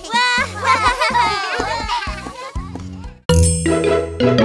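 High cartoon voices over children's background music. The music breaks off about three seconds in, and a new, bright intro tune with plinking notes starts suddenly.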